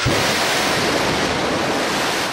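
Missile launch: the rocket motor's exhaust blast heard as a loud, steady rushing noise with no distinct tones.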